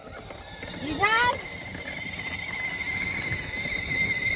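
Battery-powered ride-on toy car setting off, its electric drive motor whining steadily at a high pitch from about a second and a half in. Just before, there is a short rising call.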